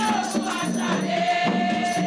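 Haitian Vodou ceremonial song: a group of voices singing together, holding long notes, over shaken rattles and a steady percussive beat.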